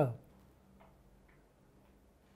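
The end of a spoken word, then near silence: room tone with a faint steady hum.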